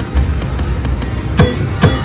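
Video slot machine playing its game music while the reels spin, with two sharp reel-stop strikes near the end.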